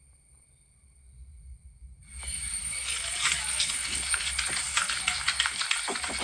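Outdoor sound from a handheld walking video played back on a phone: near silence at first, then from about two seconds in a steady crackly rustle with many small irregular clicks.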